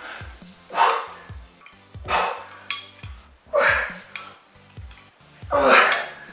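A man's strained, breathy exhalations, four of them about a second and a half apart, one with each pull-up, over a background instrumental with a deep beat.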